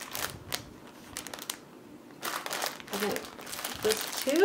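Packaging crinkling as a package of natural cellulose sponges is handled: a short rustle near the start and a longer one a little past halfway.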